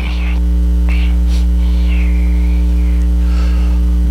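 Loud, steady electrical mains hum with a stack of overtones on the microphone audio. Faint scattered rustling and a soft click about a second in sit under it.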